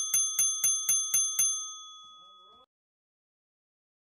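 A small bell is struck rapidly, about four strikes a second, for about a second and a half, as an outro sound effect. Its ring then fades and cuts off suddenly.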